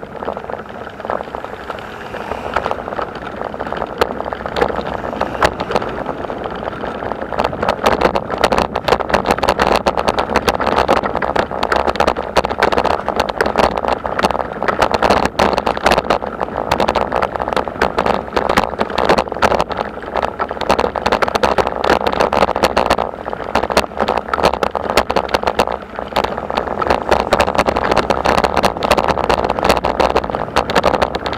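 Continuous dense rattling and rumbling from a ride over cobblestone paving: the vehicle and its mounted camera shake on the uneven stones, getting louder from about eight seconds in.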